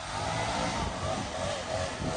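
Steady road and engine noise of a vehicle driving with an enclosed mower trailer in tow.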